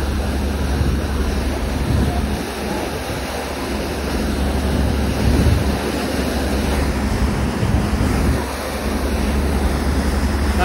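Wind buffeting the microphone over the steady rush of a passenger ferry's churning wake, with a low rumble underneath.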